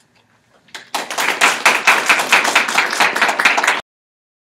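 Audience applauding: a dense patter of hand claps that begins about a second in and cuts off suddenly shortly before the end.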